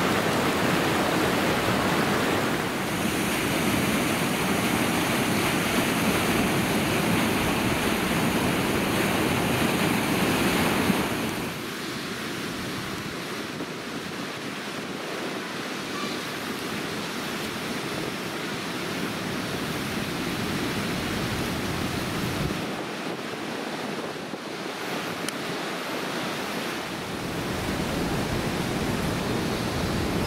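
River water rushing over bedrock ledges in a steady rush. It is loud for about the first eleven seconds, then drops suddenly to a quieter, more distant rush.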